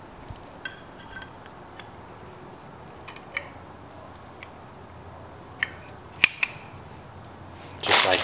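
Light metallic clicks and taps of a clutch throwout bearing being slid onto its clutch fork by hand, a dozen or so scattered ticks with the sharpest click about six seconds in.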